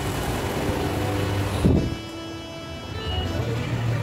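Steady rain and street traffic noise, broken by a brief bump a little under two seconds in, after which the noise drops sharply to a quieter hum with faint steady tones.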